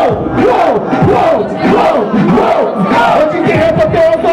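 A dense crowd shouting and cheering together, many voices overlapping loudly without a break: an audience picking a winner by noise in a freestyle rap battle.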